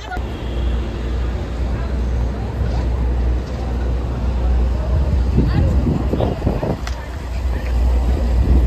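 City street traffic noise: a steady, loud low rumble of vehicles, with voices of passers-by around.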